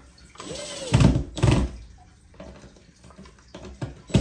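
A short rustle, then two loud knocks about half a second apart as wooden kit pieces are handled and set down on the tabletop.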